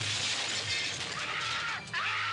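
Window glass smashing and shattering, sudden and loud at the start, with the crash and falling glass filling most of the two seconds.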